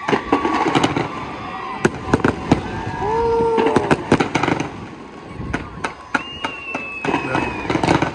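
Fireworks going off in rapid bangs and crackles, a dense run of reports with people's voices over them.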